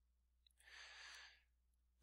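Near silence with one faint breath drawn in by the speaker, starting about half a second in and lasting under a second.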